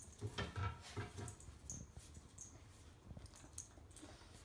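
A corgi worrying and shaking a stuffed plush toy cow, with short dog noises and soft thumps and rustles from the toy. These come in an irregular cluster over the first second and a half, with a few more near the end.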